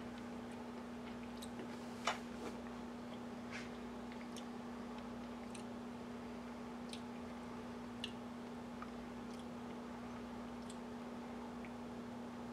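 Faint, scattered mouth clicks and lip smacks from someone tasting a drop of liquid in the mouth, about ten soft clicks with the loudest about two seconds in, over a steady low hum.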